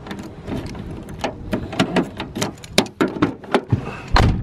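A key turning in a car door lock, then the door opening and someone climbing into the seat: an irregular string of sharp clicks and knocks with rustling over a low rumble.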